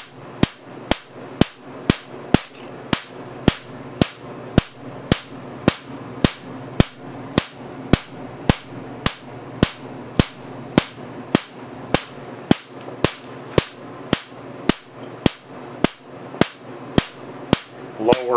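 Marx generator sparking across a 7-inch electrode gap through water mist, a sharp crack about twice a second at an even rate, over a steady low hum.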